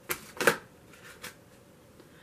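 A deck of tarot cards being handled as cards are drawn: two short card sounds in the first half second, then a fainter one a little past a second in.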